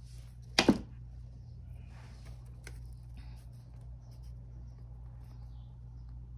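Scissors snipping through a paper strip once, a quick sharp cut about half a second in, trimming the end off a printed quote. Then only faint paper-handling ticks over a steady low room hum.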